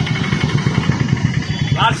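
A motor vehicle engine running steadily nearby, a low rumble. A man's speech resumes near the end.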